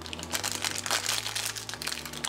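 Crinkling of a thin plastic foil packet being handled and torn open by hand, a quick irregular run of crackles.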